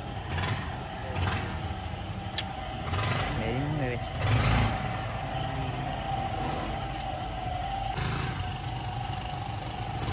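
Small motorcycle-type engine running in a homemade four-wheel buggy as it drives off and manoeuvres, louder for a moment about four seconds in.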